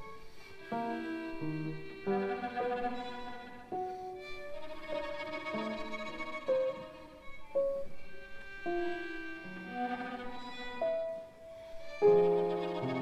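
A violin, cello and piano trio playing sparse, very soft, short separate notes with small pauses between them, in a tentative, delicate contemporary classical texture.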